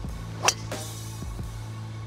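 A golf club striking a ball off the tee in a full-power swing: one sharp crack about half a second in. Steady background music runs underneath.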